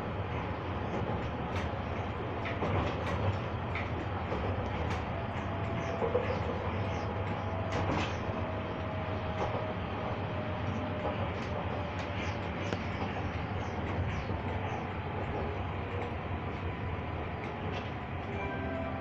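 Stadler low-floor tram running along the track, heard from inside the car near the cab: steady rolling and traction rumble with a low hum and scattered clicks. A faint thin whine rises out of it from about six to ten seconds in.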